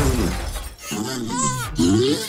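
A sudden crash of something smashing and breaking, heard at the start and dying away over about half a second, followed by cartoon vocal squeals over music.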